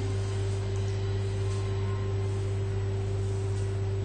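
A steady background hum: a constant low drone with an even, higher tone above it, unchanging throughout.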